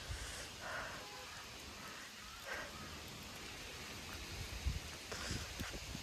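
Steady rain falling, an even hiss, with a few soft low bumps near the end.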